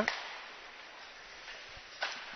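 Faint ice-arena background noise, a soft even hiss, with a couple of light knocks late on.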